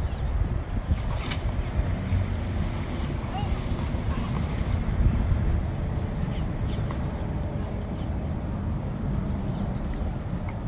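Wind buffeting the microphone outdoors: a steady, deep rumbling noise with no clear rhythm.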